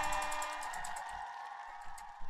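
Tabletop prize wheel spinning down, its pointer clicking rapidly against the pegs, the clicks growing slower and fainter as the wheel loses speed.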